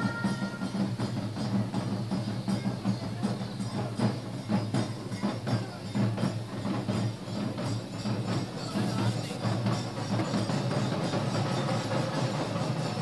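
Large barrel drums of a folk drum troupe beaten in quick, uneven strokes to accompany a street dance.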